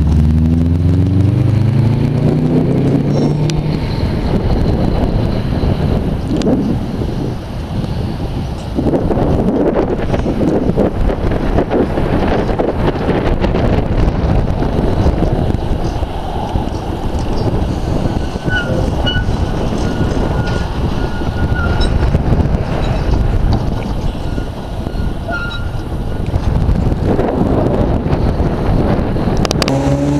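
SGP E1 tram pulling away, the whine of its motors rising in pitch over the first few seconds, then a steady low rumble as it runs along the track. Faint short high squeals come now and then in the second half.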